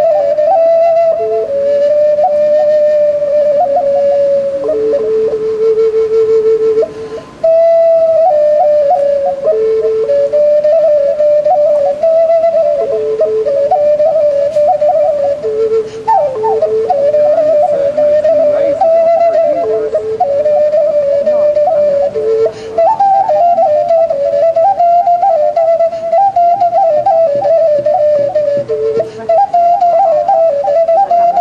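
Small flute made from the horn of a blesbok antelope, playing a slow, slurred solo melody within a narrow range. Long held notes keep dipping to one low note, and there is a brief break for breath about seven seconds in. The line climbs higher in the last third.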